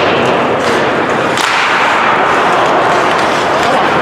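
Ice hockey play on a rink: a steady wash of skate and arena noise, broken by two sharp cracks of stick on puck, one at the start and one about a second and a half in.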